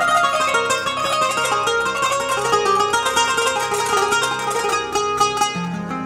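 A kanun (Turkish plucked zither) played live in fast runs of plucked, ringing notes over a steady low accompaniment.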